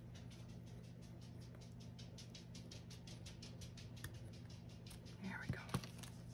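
Fast, light scratching strokes of a hand rubbing over a paper sticker, about seven a second, then a couple of louder knocks near the end.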